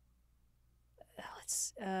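About a second of quiet room tone with a faint low hum, then a woman's sharp breathy hiss and a spoken "uh" near the end.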